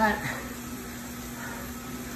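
A steady mechanical hum with a constant low tone under an even whir, with the end of a man's spoken word at the very start.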